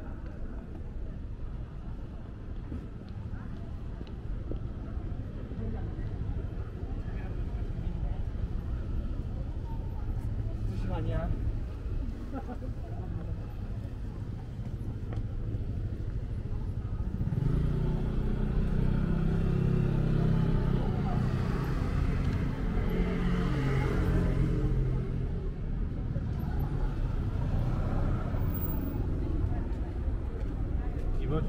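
Busy city street ambience: a steady low rumble of traffic with passers-by talking close by, growing louder past the middle as people and traffic pass near.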